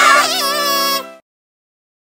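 A cartoon character's wavering, crying wail over a held music chord, both cutting off suddenly just after a second in.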